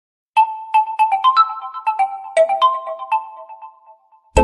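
Realme 9 phone ringtone: a bright melody of about a dozen quick notes, each ringing and dying away, starting a moment in and fading out near the end.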